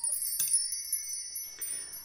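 Small high-pitched chimes ringing, several bright metallic tones together, struck again about half a second in and left to ring out slowly.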